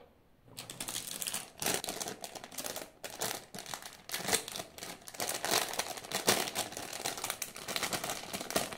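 Thin clear plastic parts bag crinkling and rustling as it is handled, a dense run of crackles starting about half a second in.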